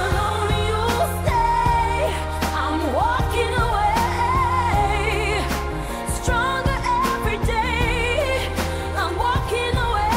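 Pop song: a sung vocal line with wavering, vibrato-laden held notes over a steady bass and beat.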